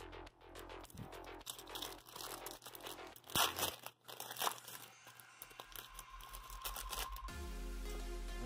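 Crinkling and tearing of a trading-card pack wrapper being opened, with a couple of sharper crackles, over quiet background music.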